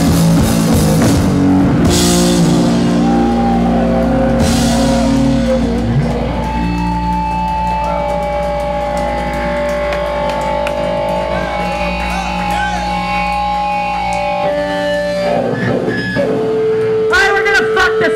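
Live rock band playing loudly, with guitar, bass, drums and crashing cymbals. After about six seconds the drums drop out and steady, ringing guitar tones are held. A voice yells near the end.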